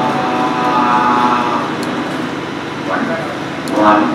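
A patient's voice played from a recorded clip over the room's speakers: one vowel held steady for about a second and a half, then shorter vocal sounds near the end. It is a voice sample from a patient with unilateral vocal cord palsy, played to judge the result of arytenoid rotation surgery.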